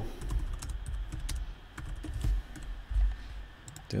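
Typing on a computer keyboard: an irregular run of light key clicks.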